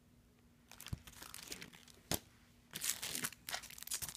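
Clear plastic sticker packaging crinkling and rustling as it is handled, with a sharp click about two seconds in and busier rustling near the end.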